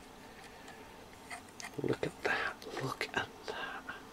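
Quiet, indistinct mumbling under the breath, with a few small clicks from a plastic model train car being handled.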